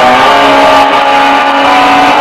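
Amplified, distorted electric guitar played loud, with held notes ringing steadily.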